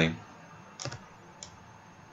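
Two soft clicks at a computer, about half a second apart, over faint background hiss.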